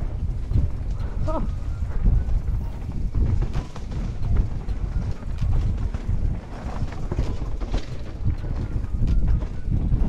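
Mountain bike riding fast down a rough dirt singletrack: tyres rumbling over the ground and the bike clattering over roots and rocks in frequent knocks, with wind buffeting the helmet-mounted microphone.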